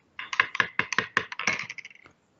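Typing on a computer keyboard: a quick, irregular run of key clicks lasting nearly two seconds.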